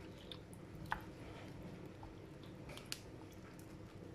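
Wooden spoon stirring rice, water and diced vegetables in a ceramic bowl: faint wet swishing, with two light clicks about one and three seconds in.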